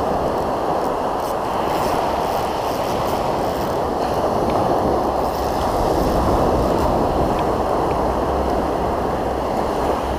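Ocean surf washing up on the beach, a steady rushing noise, with wind on the microphone adding a low rumble.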